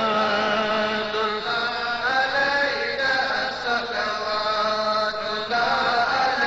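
Devotional chanting: voices intoning a Sufi litany in long, held, melodic phrases, shifting to a new phrase about two seconds in and again near the end.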